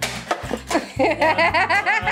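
People laughing over upbeat background music.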